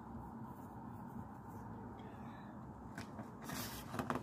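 Quiet room tone with a steady low hum; from about three seconds in, light rustling and knocks as a cookbook is handled and lowered.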